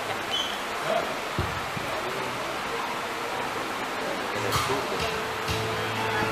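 Steady hiss of room noise in a large hall. About four and a half seconds in, a low held note and a couple of strums come in as live music starts up.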